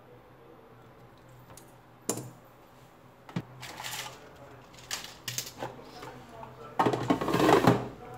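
Small clicks and taps of handling parts on a silicone repair mat, then a louder rustle of plastic near the end as a clear carrier strip of replacement charging sockets is picked up.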